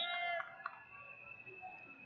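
A short, high-pitched yell, then a thin, steady high tone lasting about a second over arena background noise.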